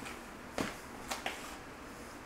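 Quiet room tone with three short, faint clicks: one about half a second in and two close together around a second in.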